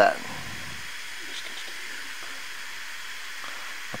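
Steady, even hiss of background noise, with a few faint scattered rustles as hoses are worked into place behind a radiator.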